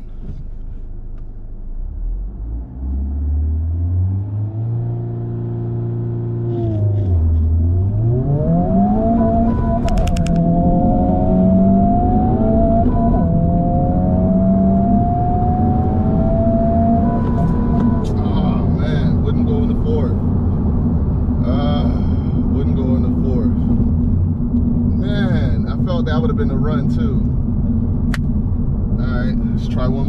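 Honda Civic Type R FL5's turbocharged 2.0-litre four-cylinder heard from inside the cabin, held at launch revs and then accelerating flat out. Its pitch climbs again and again, broken by upshifts, until the shift into fourth won't go in. From then on the engine runs at a steady drone.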